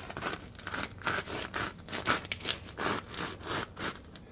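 Granular cat litter crunching and scraping under a shoe sole as it is ground back and forth into a stained concrete slab, a run of short, irregular scrapes several a second.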